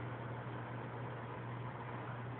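Aquarium equipment running: a steady low hum with a constant hiss underneath.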